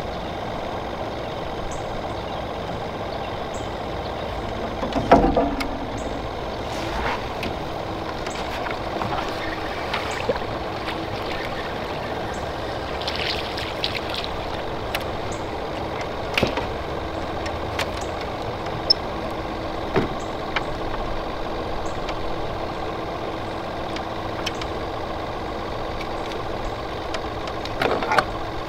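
Small boat motor running steadily at trolling speed, a constant hum with a faint steady tone. A few short knocks sound over it, the loudest about five seconds in.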